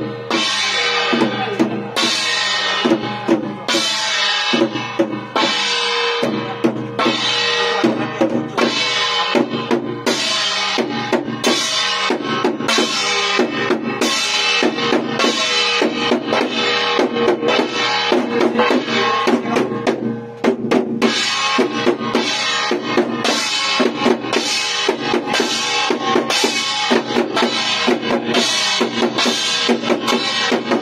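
Chinese temple ritual percussion: a hand-held drum beaten in a steady driving pulse, about one strong beat a second with quicker strokes between, over a ringing metallic tone that carries on between the strokes.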